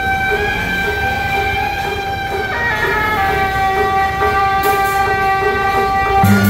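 Procession band music, likely beiguan: a melody of long held reedy notes that steps to new pitches partway through, with a few bright metallic clashes near the end.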